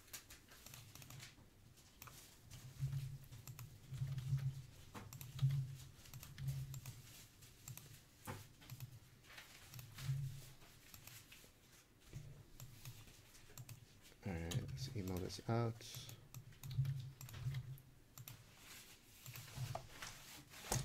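Scattered quiet clicks of a computer mouse and keyboard keys as a list is randomized, with a few seconds of low, wordless voice about two-thirds of the way through.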